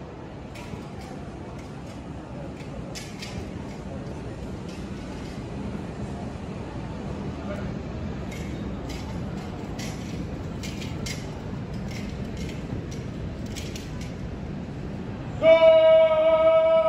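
Hall ambience: a low murmur of onlookers with scattered light clicks while the cadets hold their rifles at present arms. Near the end, a loud, steady pitched tone with overtones starts and holds.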